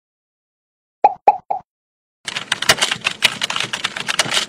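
Animated end-card sound effects: three quick pitched blips about a second in, then a dense run of rapid clicks like typing on a keyboard that starts about halfway and keeps going.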